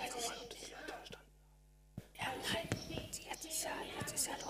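A girl's recorded speech played back over a hall's loudspeakers, indistinct and reverberant, with a pause of under a second in the middle.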